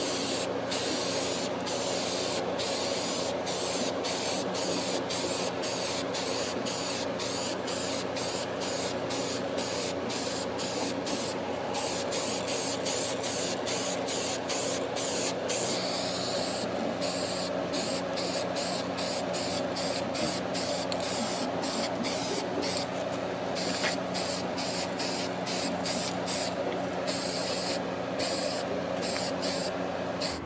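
Steady spraying hiss over a low, even motor hum; the hiss dips briefly about twice a second.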